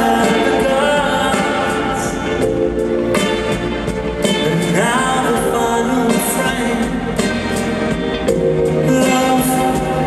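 Live ballad sung by a male lead singer with a string orchestra including cello, heard from the audience in a large stadium. Sustained notes with a sliding vocal line about five seconds in.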